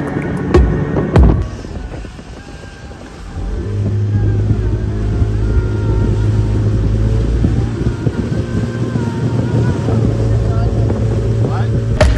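Music with a beat for the first second or so, then from about three and a half seconds in a speedboat's engine running steadily at speed, with wind and rushing water over it.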